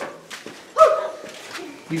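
Children's voices: two short, high-pitched wordless calls, one right at the start and a longer one about a second in, then an adult's voice begins speaking just at the end.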